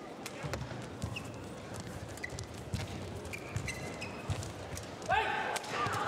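Badminton rally: a run of sharp racket strikes on the shuttlecock with low thuds of footwork, and short high squeaks of shoes on the court mat. A voice rises near the end.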